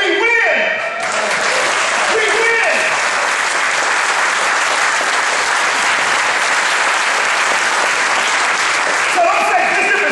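Congregation applauding, starting about a second in and holding steady.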